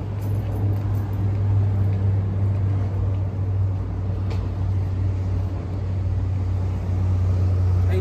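A steady low mechanical hum that holds one pitch throughout, over a background of outdoor noise.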